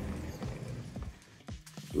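Sliding glass patio door rolling on its track with a low rumble, then a few light clicks as it closes behind someone stepping outside.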